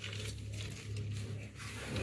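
Steady low hum inside a car, with faint rustling and light ticks from handling.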